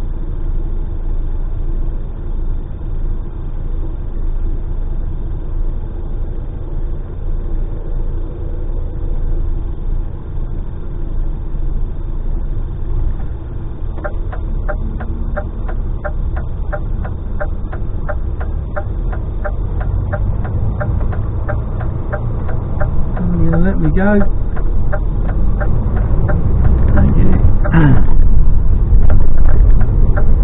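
DAF XF lorry's diesel engine rumbling in the cab, first idling in a queue, then pulling away and getting louder over the last ten seconds. A regular ticking runs through the second half, and a voice is heard briefly twice near the end.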